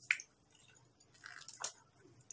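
Quiet, close-up chewing of a mouthful of raw beef, with a sharp wet smack just after the start and a few more clicky mouth sounds about a second and a half in.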